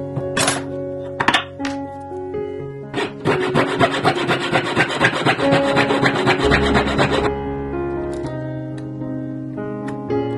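A hand tool scraping quick strokes over a small fine-silver plate held against a wooden bench pin. There are a few single strokes at first, then a fast, dense run of about four seconds starting about three seconds in, over background music.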